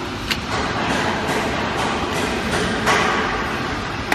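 Horizontal automatic cartoning machine for plastic bottles running, a steady mechanical din with a sharp click shortly after the start and a louder burst of noise about three seconds in as its mechanisms cycle.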